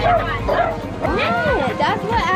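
A dog barking, with a yelp that rises and falls a little after a second in, over background music and children's chatter.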